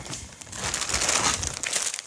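Plastic shopping bag and plastic food packaging crinkling and rustling as a hand rummages through the bag and pulls out a packet of pasta, getting louder about half a second in.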